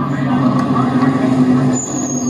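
NASCAR Xfinity Series Ford Mustang's V8 engine running at low speed, a steady low drone, heard through a television speaker.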